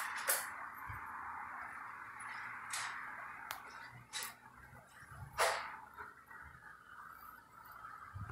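Quiet outdoor city street ambience: a steady hiss with about five short, sharp clicks or taps scattered through it.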